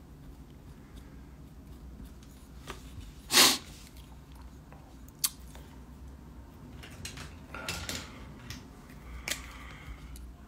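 Handling noises at a drawing table in a quiet room: one short swish about three seconds in as a sheet of paper is turned on the tabletop, a sharp click about two seconds later, and light scratchy rustles near the end.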